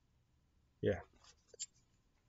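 A man says a single "yeah" about a second in, followed by a few faint clicks; otherwise quiet room tone.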